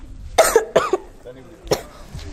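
A girl coughing close to a microphone: two quick coughs about half a second in, then a third near the end.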